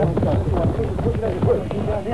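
Indistinct shouted voices of a group of men urging each other on, with no clear words.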